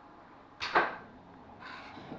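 A short, sharp hissing whoosh about half a second in, then a softer, shorter hiss about a second later.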